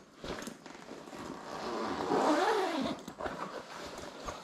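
Zipper on a long tripod carry bag being pulled open, one drawn-out rasp about halfway through that rises and falls in pitch, with light handling clicks around it.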